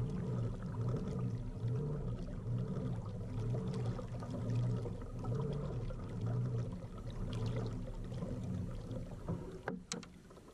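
Pedal-drive kayak under way: the propeller drive whirring steadily, swelling and fading about once a second with the pedal strokes, over the wash of water along the hull. A sharp click near the end.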